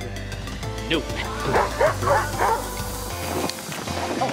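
Sled dogs giving a run of short, high yips and whines while being offered treats, over background music with a steady low bass that drops out about three seconds in.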